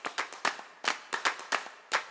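A quick, uneven series of sharp clap-like percussive hits, about four or five a second, as an edited intro soundtrack.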